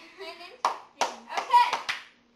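A few sharp hand claps mixed with girls' voices.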